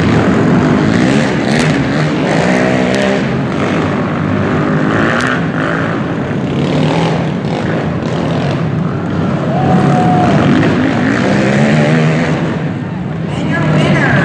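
Racing quad (ATV) engines revving up and down repeatedly as they run around a dirt motocross track, in an echoing indoor arena.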